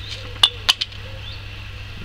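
Two sharp clicks about a quarter of a second apart, half a second in, from a fishing pole tip and float rig being handled, over a steady low hum.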